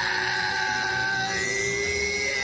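A man's long, held angry scream from an animated character, one sustained yell across the whole moment, over dramatic background music.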